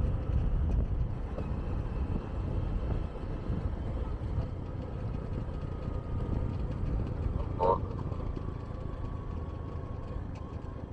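Steady low rumble of wind and road noise from a moving vehicle, with a brief, sharper higher sound about three-quarters of the way in.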